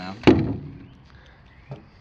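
A single sharp knock about a quarter second in: a power drill set down on the wooden trailer deck. A faint tick follows near the end.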